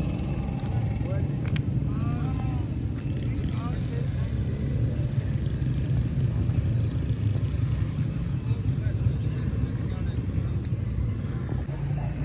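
Steady low outdoor rumble, with faint distant voices a couple of seconds in.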